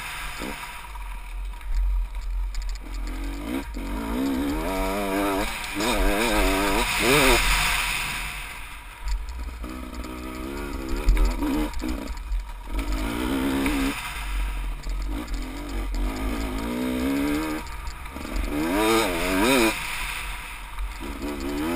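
Dirt bike engine ridden hard over rough ground, its revs rising and falling again and again as the throttle opens and closes. Wind rushes over the helmet-mounted microphone underneath.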